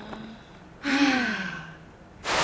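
A woman sighs once, about a second in: a breathy exhale with her voice sliding down in pitch and trailing off.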